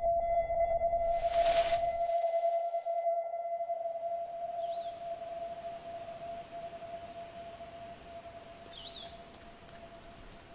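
A steady, single electronic tone held throughout and slowly fading away, with a burst of hiss about a second in and two faint high chirps, one near the middle and one near the end.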